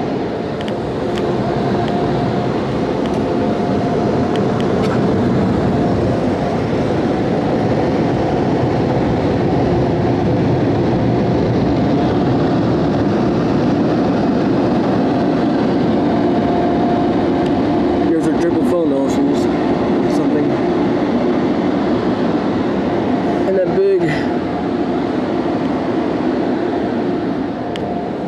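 PDQ LaserWash 360 car wash dryer blowing air over the car from its overhead gantry, heard from inside the car: a loud, steady rush of air with a low hum, easing slightly near the end.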